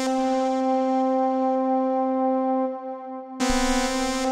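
Bitwig Polysynth software synthesizer holding a single note, its upper harmonics fading away over about three seconds as the filter closes. The note is retriggered about three and a half seconds in with a bright attack, the filter opened again by the ParSeq-8 step modulation.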